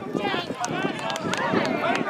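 Several voices shouting and calling over one another at a rugby match during a ruck, with a few faint sharp clicks.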